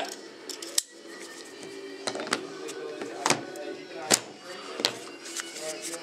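A few sharp, separate clicks from a gas airsoft Glock-style pistol and its magazine being handled, over faint background music.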